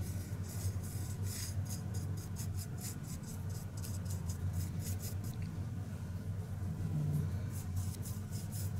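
Paintbrush bristles scratching and stippling over a textured moulded brick surface, several short strokes a second, over a low steady hum.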